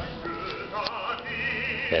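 Operatic singing: a female voice holds notes with wide vibrato over sustained low accompanying notes, strongest in the second half.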